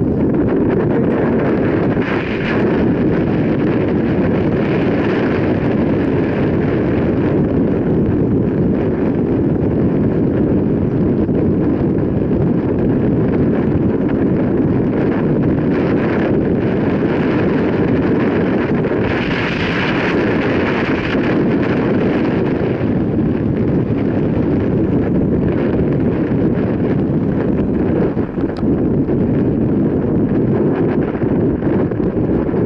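Wind buffeting the microphone of a camera carried on a moving mountain bike: a loud, steady low rush, with brighter hissing swells a couple of times.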